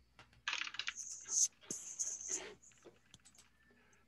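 Typing on a computer keyboard, heard through a video-call microphone: a quick run of keystrokes that starts about half a second in and lasts about two seconds, then a few scattered clicks.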